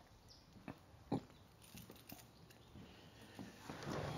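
Quiet room tone with two faint, short knocks about a second in, then a faint steady hiss coming up near the end.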